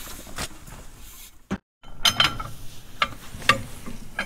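Scattered metallic clicks and clinks from a socket tool and long bar turning a seized precombustion chamber back and forth in a cast-iron Caterpillar D2 cylinder head, the chamber being worked loose in its threads. The sound cuts out completely for a moment about a second and a half in.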